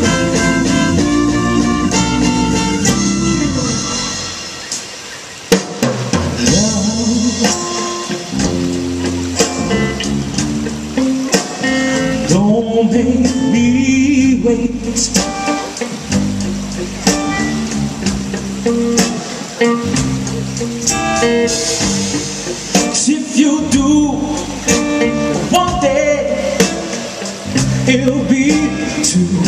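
A live soul band plays the opening of a song in early-1960s R&B style, with drum kit and guitar. The band eases off briefly after about four seconds, then comes back in on a sharp hit.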